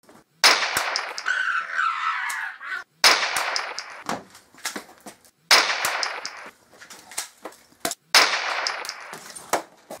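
Gunshot sound effects: four loud bangs about two and a half seconds apart, each trailing off over a second or two, with fainter clicks between them.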